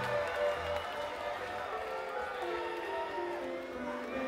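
Live rock band music: held instrument notes that step from one pitch to another, without singing.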